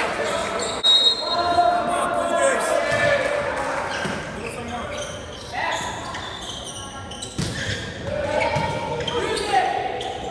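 Volleyball rally in a large gym: a couple of sharp smacks of the ball being hit, with players' shouts and calls echoing through the hall.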